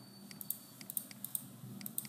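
Computer keyboard keys clicking, about eight sharp, irregular presses.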